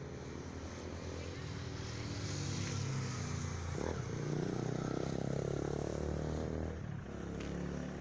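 A motor vehicle driving past. Its engine grows louder over the first four seconds or so, is loudest for a couple of seconds, then eases a little near the end.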